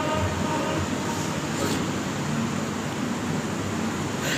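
Steady rumbling background noise with a hiss above it, even throughout, in a pause between a man's spoken sentences.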